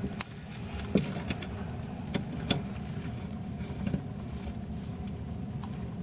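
A steady low background hum runs throughout, with a handful of faint, scattered clicks and rustles.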